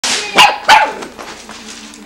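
Golden retriever puppy, about 8 weeks old, giving two short, sharp barks in quick succession near the start, barking in fright at its squeaky carrot toy.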